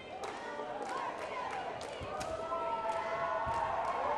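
Basketball bouncing on a gym's hardwood floor, several separate bounces as a player dribbles at the free-throw line before shooting, over crowd voices, some held long in the second half.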